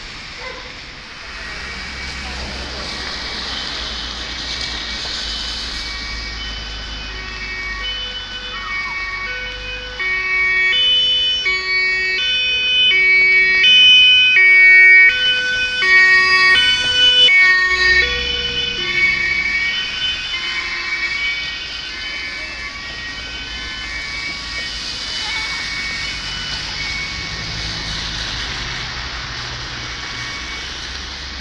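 A German emergency vehicle's two-tone siren (Martinshorn) goes by, its high and low notes alternating about once a second, swelling to loudest mid-way and then fading. Under it is the steady rush of the flooded river.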